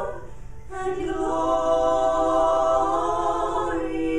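Female vocal trio singing in close harmony without instruments, through microphones. After a brief break about half a second in, the three voices hold one long chord.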